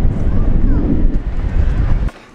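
Wind buffeting the microphone: a loud, steady low rumble, with faint voices underneath.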